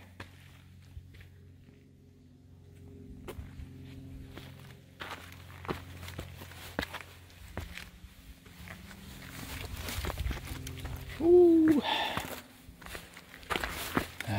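Footsteps on a trail, with scattered light scuffs and steps over a steady low drone. About eleven seconds in comes a short voiced sound with a bending pitch, the loudest thing in the stretch.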